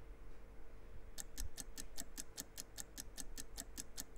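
Countdown clock sound effect: rapid, evenly spaced ticking, several ticks a second, starting about a second in.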